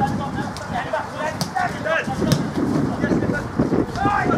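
Voices of players and spectators calling out across an open football pitch, none of it clear speech, with wind buffeting the microphone. A few sharp knocks sound about a third and halfway through.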